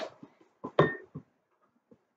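A few short clinks and knocks of a plastic squeeze bottle of washing-up liquid being handled against a jar, the loudest just under a second in.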